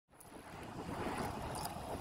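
Rushing wind and road noise on a bike-mounted camera's microphone during a road-bike ride, fading in from silence.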